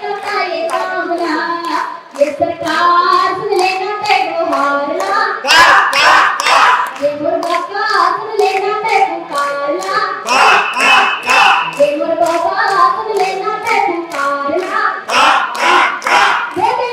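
A woman singing a Chhattisgarhi song through a microphone and loudspeaker, with hand claps keeping a steady beat about twice a second.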